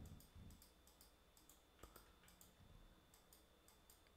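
Near silence with faint, irregular computer mouse clicks, several a second, over a low steady hum.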